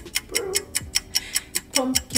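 Background music with a steady beat: quick ticking hi-hats over deep kick drum hits about twice a second, with a brief bit of the woman's voice.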